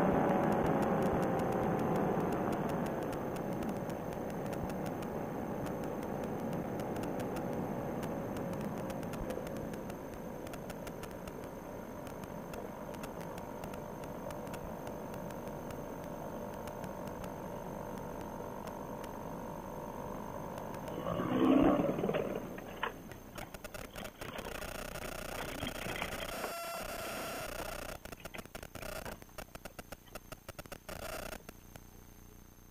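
Paramotor engine on a trike being throttled back, its pitch falling over the first few seconds, then running steadily at low power with wind noise during the landing approach. A short louder burst comes about 21 seconds in, after which the sound drops lower and becomes uneven.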